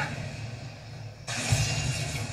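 Anime fight soundtrack: a low steady rumble, then about a second and a quarter in a sudden rushing whoosh with a thump.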